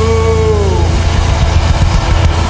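Loud live rock band music with a dense, droning low end. A held note slides down in pitch and fades out within the first second.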